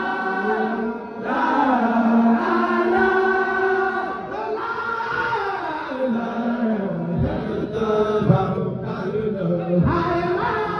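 A group of voices chanting together in long held notes that glide up and down in pitch, the phrases breaking about every three seconds: devotional dhikr chanting.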